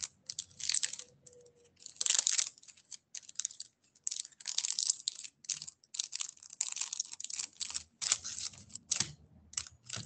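Typing on a computer keyboard: an irregular run of clicking keystrokes, some in quick flurries, heard over the video-call audio.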